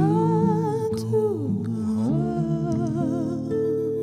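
The closing phrase of a slow live song: a woman's voice sings with vibrato, slides down in pitch, then settles on a long final note over a sustained accompaniment chord that begins to fade near the end.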